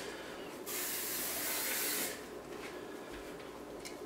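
Cooking spray hissing from an aerosol can, a single steady spray lasting about a second and a half.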